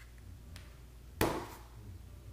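Small RC helicopter parts being handled in the fingers, with one sharp click a little past the middle as a link ball is worked onto a flybar-cage part.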